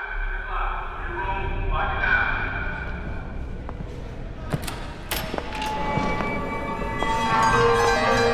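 Film-style soundtrack: a deep low hum with indistinct voices at the start, a few sharp knocks about halfway through, and music swelling in near the end.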